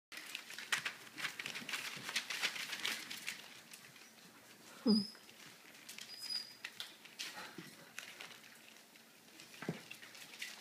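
Puppies scampering and wrestling on newspaper: paper rustling and crackling and claws clicking, busiest in the first few seconds and thinning out after. Just before halfway, a short low voice-like 'hmm' is the loudest sound.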